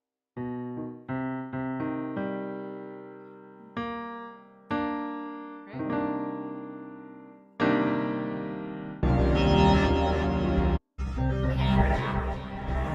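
Digital piano chords struck one after another, each left to ring and fade, as a ninth chord and its neighbours are worked out by ear. About nine seconds in, a louder, fuller stretch of music with heavy low end takes over, dropping out for an instant shortly before the end.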